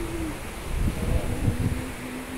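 A voice chanting in long, held low notes, devotional chanting in a Hindu temple, with a few low thumps about halfway through.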